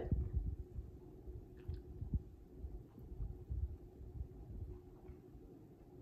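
Quiet workspace with an electric fan running: a steady low hum and an uneven low rumble, with a few faint small clicks.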